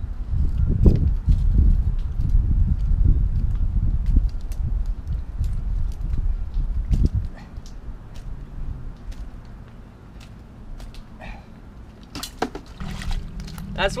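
Wind buffeting the camera microphone: an uneven low rumble, strong for the first seven seconds or so and then easing, with faint scattered clicks.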